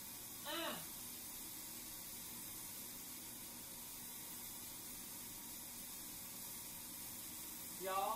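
Steady sizzle of peppers frying in a skillet on the stove, left undisturbed to brown. A brief voice sound comes about half a second in.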